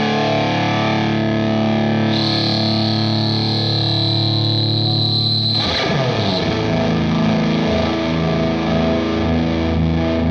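Electric guitar overdriven by a Hudson Broadcast germanium preamp pedal into the clean channel of an Orange Rockerverb amp. A chord rings out with a high steady tone over it for a few seconds, then a new chord is struck about six seconds in and held.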